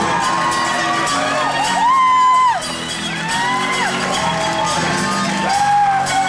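Live acoustic rock band playing, with a high male voice wailing long wordless notes that rise, hold and fall; the loudest note, held about two seconds in, cuts off suddenly.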